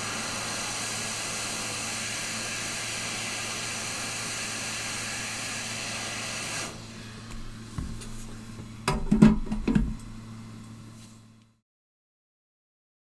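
Hot air rework station set to 400 degrees blowing on a circuit board: a steady hiss over a low hum, which stops about two-thirds through. A few knocks and clatter of handling follow before the sound fades out.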